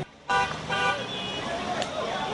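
Street commotion: traffic noise and voices, with two short car-horn toots in the first second.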